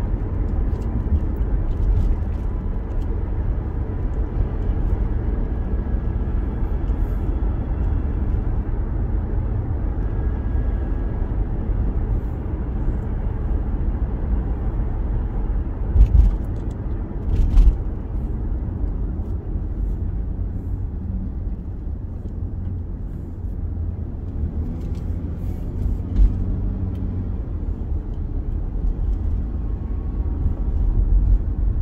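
Steady low road and engine rumble of a car being driven, heard from inside the cabin. Two brief thumps stand out about halfway through, with a smaller one later.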